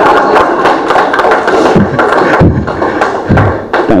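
Audience applauding, with a few low thuds in among the clapping.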